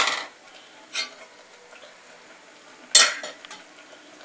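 Steel ladle clinking against a stainless steel pressure cooker pot: a loud clink at the start, a lighter one about a second in, and another loud one near the end.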